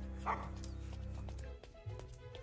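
Anime episode soundtrack playing quietly: steady background music with a dog's short barks, the clearest about a third of a second in.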